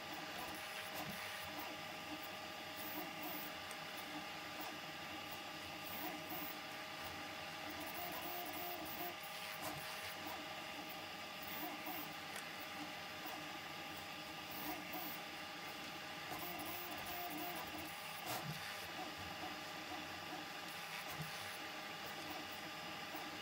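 Prusa MK4 3D printer fitted with a pellet extruder, running a print: its stepper motors whine in several steady tones. Short warbling runs of motor sound come twice, about eight and sixteen seconds in.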